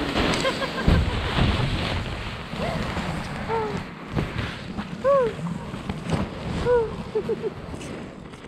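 Paraglider wing fabric rustling and flapping against the microphone as the collapsed wing covers the camera, loudest in the first two seconds. Several short vocal cries that rise and fall in pitch come through it, a person moaning after the landing went wrong.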